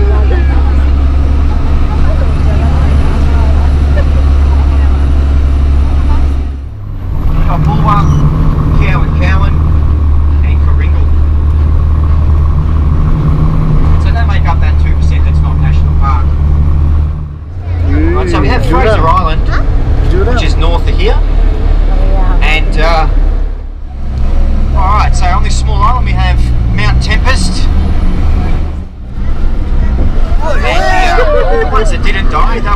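Four-wheel-drive tour bus engine pulling along a sandy bush track, a steady low drone heard from inside the passenger cabin, with voices talking over it. The drone drops away briefly four times.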